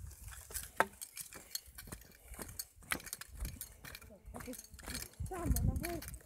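Footsteps on a dirt forest path: a run of irregular soft clicks and crackles from the ground underfoot. A voice speaks briefly near the end.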